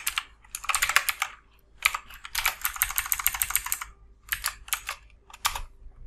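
Typing on a computer keyboard: short runs of keystrokes with brief pauses between, the longest run a little past the middle.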